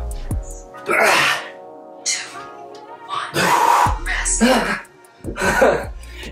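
Background music under a man's loud, breathy exhalations and grunts from exertion, several of them a second or two apart.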